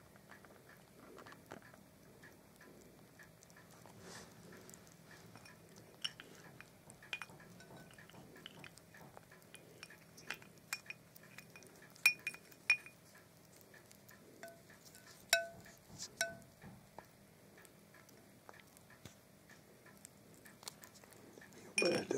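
A baby hedgehog eating from a china plate: faint, scattered clicks and clinks against the china, a few of them ringing briefly. The loudest come about twelve and fifteen seconds in.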